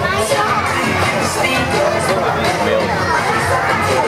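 Many children's voices shouting over upbeat dance music with a steady beat.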